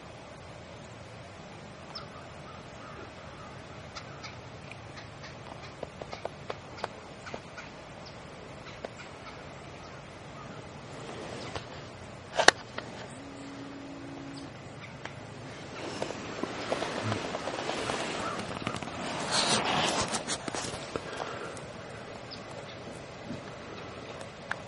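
Crows cawing in open countryside, the calls loudest and most frequent in the last third. A single sharp crack sounds about halfway through.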